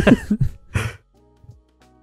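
Laughter in short, rough bursts for about the first second, then a quiet stretch with only faint steady tones.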